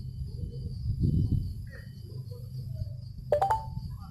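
Construction-site noise: heavy machinery running with a steady low rumble that swells briefly about a second in, and two sharp metallic knocks with a short ring a little after three seconds.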